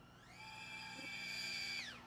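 Faint whine of a BetaFPV Pavo20 Pro cinewhoop's brushless motors and 2.2-inch propellers. It rises in pitch as the throttle is pushed, holds steady, then drops away near the end as the throttle comes off.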